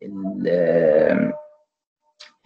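A man's drawn-out hesitation sound, a single held "ehh" at a steady pitch lasting about a second and a half, as he searches for the next word.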